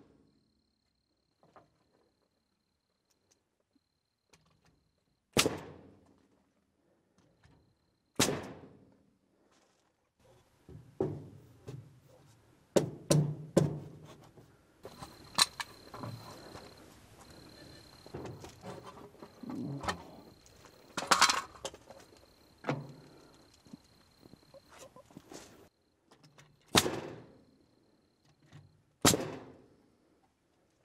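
Pneumatic framing nailer firing nails into wooden posts: single sharp shots a few seconds apart, with a cluster around the middle and two more near the end. Between the shots come knocks and clatter of boards being handled, and a faint steady hiss for several seconds in the middle.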